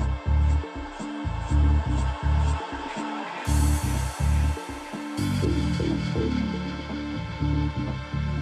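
Electronic dance music playing in a live DJ mix, with heavy bass hits about twice a second. A hissing swell comes in about halfway through, and soon after, the bass part changes to a denser line with falling notes.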